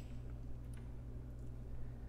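Faint, steady low hum with a few faint light clicks.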